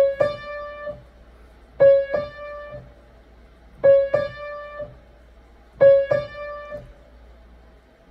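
Piano playing a two-note right-hand figure, C-sharp then D, four times about every two seconds. Each time a short C-sharp is followed by a D that rings out for about a second.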